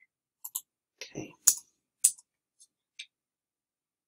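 Scattered sharp clicks of a computer's pointer being clicked, about five across a few seconds, with a brief low sound about a second in.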